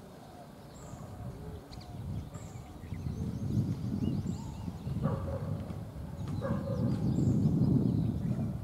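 Birds chirping in short, repeated calls over a low, irregular rumble that builds and is loudest near the end, with two brief calls from a voice or animal in the middle.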